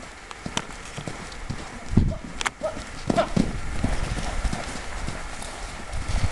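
A ridden horse's hooves thudding on a sand arena in a steady run of beats, getting louder from about two seconds in as it comes close.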